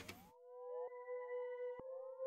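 Omnisphere 'Granular Vibra Signs' synth preset playing a quiet, steady droning note with a rising pitch sweep repeating about once a second. It runs through a sweeping filter effect and an EQ notch that cuts one harsh frequency.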